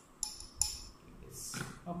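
A metal spoon clinking twice against the rim of a glass test tube as copper sulphate crystals are tipped in, each clink ringing briefly.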